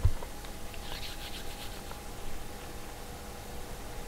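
Quiet room tone with a faint steady hum, and a brief soft scratching about a second in.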